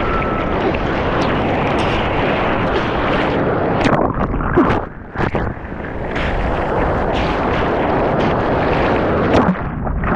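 Whitewater rushing and churning around a surfboard as it is paddled through foam, heard through a waterproof action-camera housing as a loud continuous rumble with splashes from the paddling strokes. The sound dips briefly about five seconds in as the camera drops toward the water.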